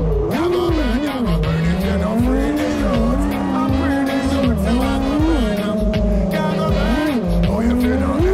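Brushless motors of a small FPV quadcopter whining, their pitch swooping up and down with the throttle, over background music with a beat.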